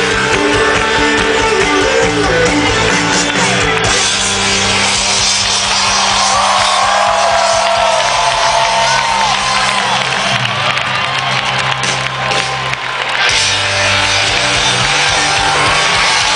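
Live rock band playing loudly through a stadium sound system, heard from among the audience, with sustained bass notes under guitar.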